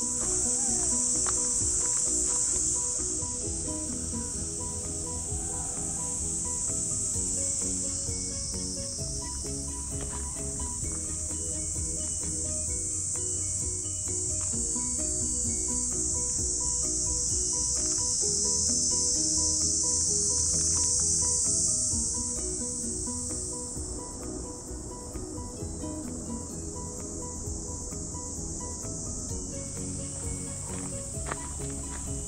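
Summer cicada chorus: a loud, steady, high shrill that swells and fades, loudest shortly past the middle and thinning near the end. Soft background music with changing notes plays beneath it.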